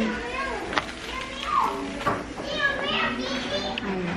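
Children's voices, high-pitched chatter and calls rising and falling, loudest in the second half, with a brief adult voice at the start.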